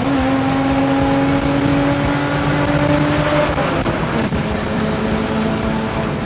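BMW 635 CSi straight-six engine pulling hard in third gear with an open exhaust, revs climbing steadily for about three and a half seconds. The pitch drops at an upshift, and then the engine climbs again in the next gear.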